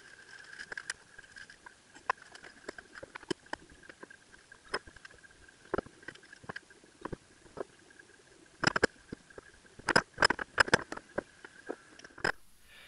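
Scattered clicks and knocks of metal parts of a Ducati 748 front fork leg being handled and worked on a workbench during reassembly, with quick runs of louder knocks near the end. A faint steady high whine runs underneath.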